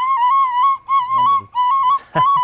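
Brass Irish penny whistle (tin whistle) played by a learner: a short run of clear, high notes close together in pitch, in three phrases with brief gaps.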